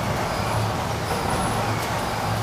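Steady low hum and hiss of running factory machinery in a sachet water plant, with no sudden sounds.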